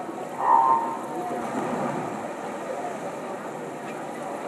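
Swimming-pool hall ambience: a steady, echoing murmur of spectators and water, with a brief tone-like sound about half a second in.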